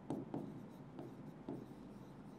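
Marker pen writing on a transparent board: a few faint, short strokes, about four over two seconds.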